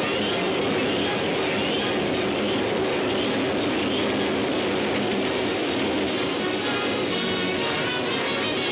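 Steady rushing rumble of a moving goods train on an old newsreel soundtrack, with music faintly beneath it.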